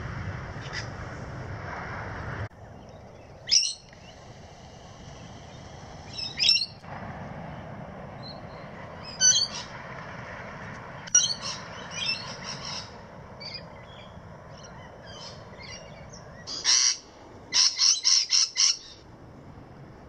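Wild birds calling: short separate calls every few seconds, then a quick run of about six notes near the end, over a steady high background of more distant birdsong.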